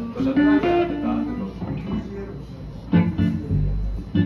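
Electric guitars and an electric bass played loosely in warm-up: a run of picked single notes, then a strummed chord about three seconds in with low bass notes under it.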